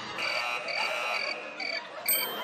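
Added sound effect of short, high chirps repeating evenly, about three a second.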